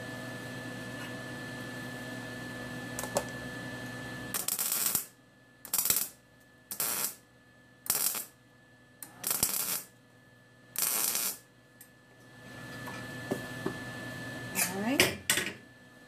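MIG welder laying six short tack welds on spoon halves, each a crackling buzz of well under a second, spread over about seven seconds with short pauses between. A steady hum with a faint high tone runs before the welds and returns after them.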